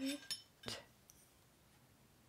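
A woman's voice finishing a word, then a single short, sharp knock or clink a little under a second in, followed by quiet.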